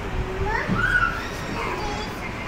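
A young child's high-pitched voice making short calls that slide up and down in pitch, with the low rumble of an indoor play area behind.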